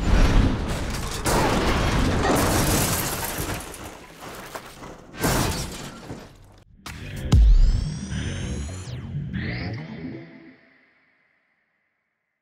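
Film sound mix of a car crash: crashes and glass shattering over dramatic orchestral-style score, with the heaviest impact about seven and a half seconds in. The music then swells on a rising tone and fades away about eleven seconds in.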